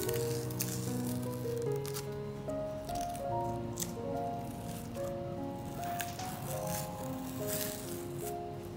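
Background music, a melody of held notes, over short, scattered crackles of masking tape being peeled off the edges of a canvas.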